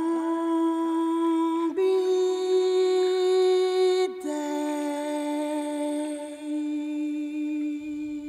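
Unaccompanied solo melody of three long held notes, the middle one the highest and the last one lower, each sustained with a slight vibrato; the final note fades out near the end.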